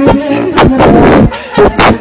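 A man singing into a microphone over a live brass band with heavy drum hits, all badly overloaded and distorted by the recording.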